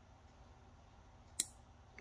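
A 5-volt relay module's relay clicks once, sharply, about one and a half seconds in, as it closes when the Hall-effect sensor senses the magnet.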